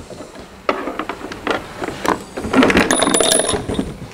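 A tool case full of metal sockets and spanners being handled and opened on a workbench: a run of knocks and clinks, with the loose tools rattling and clattering inside, busiest a little after halfway.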